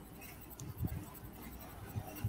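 Faint handling noise close to the microphone: light scratching with a couple of soft low thumps a little under a second in.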